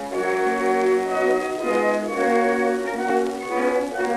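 A small orchestra plays the instrumental introduction from an early Columbia 78 rpm shellac record, a run of changing notes over a faint steady surface hiss.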